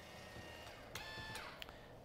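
Faint whir of a small electric adjustment motor on a bike-fitting scanner rig, with a click about a second in and a couple of light clicks after it.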